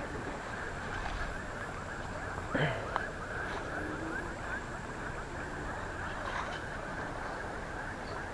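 Steady rushing of a fast-flowing river past the bank, with a short murmur from a person about two and a half seconds in.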